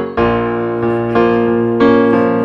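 Solo digital piano playing sustained chords over a low bass note: one struck just after the start, another about a second in and a third near the end, each left ringing.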